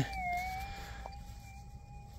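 Minelab GPX 6000 gold detector's threshold tone, a steady electronic hum from its speaker as the coil is passed over a freshly dug hole. The pitch wavers briefly near the start, then holds steady, with a faint click about a second in.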